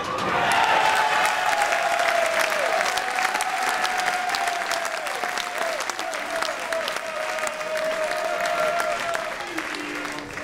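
Bowling-alley audience applauding a strike, many hands clapping steadily, just after the pins clatter at the very start. A long held tone slides slowly lower through most of the applause.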